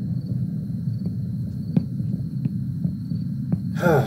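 Horror-film soundtrack: a steady low drone under a thin, steady high tone, with a few faint clicks. Just before the end comes a short wavering sound that bends in pitch, like a cry.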